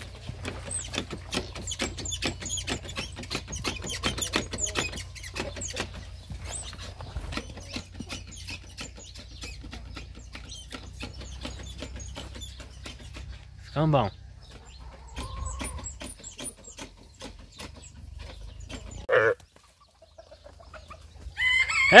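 Chickens clucking, over a dense run of small clicks and rustles and a low rumble that fades out about three-quarters of the way through.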